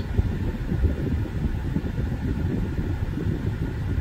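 Steady low rumble inside the cabin of a 2018 VW Atlas: the engine idling, with the air-conditioning blower running.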